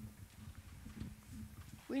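Handling noise from a handheld microphone as it is passed from one person to another: soft low bumps and rumbles. A woman's voice starts near the end.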